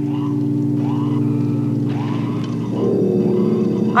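Steady synthesized drone from a cartoon soundtrack: a low, even chord with faint swells above it about once a second, growing fuller with added tones about three quarters of the way through.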